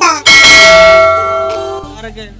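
A bell-chime sound effect for a subscribe-and-bell animation. It strikes once about a quarter second in, then rings and fades for about a second and a half before cutting off.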